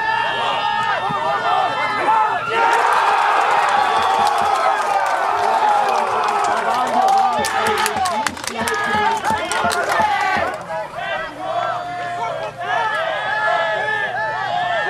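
Football crowd cheering and shouting, swelling about two seconds in and dropping back near the end, with clapping in the middle of the swell; scattered voices call out before and after.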